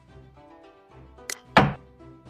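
Xiangqi board's piece-move sound effect: a light click about 1.3 s in, then a loud wooden clack as the moved piece is set down, over soft background music.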